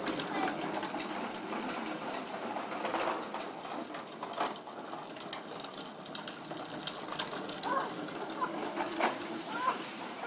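Hard plastic tricycle wheels rolling on asphalt, a steady dense rattle with many small clicks.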